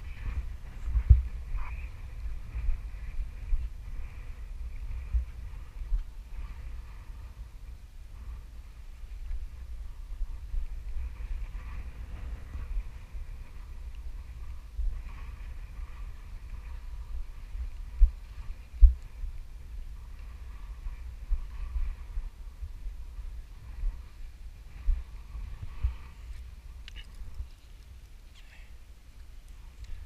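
Wind buffeting the microphone of an action camera mounted on a kite control bar: a steady low rumble with irregular sharper thumps, the loudest around a second in and near 18 to 19 seconds.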